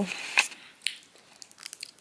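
Rustling and handling noise close to the microphone of a handheld camera, with a sharp click about half a second in and a few faint ticks near the end.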